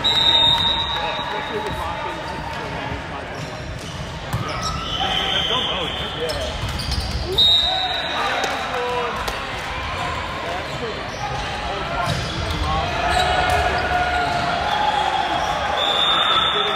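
Indoor volleyball rally: the ball being struck, sneakers squeaking on the wooden court in short high squeals, and players calling out, all echoing in a large sports hall.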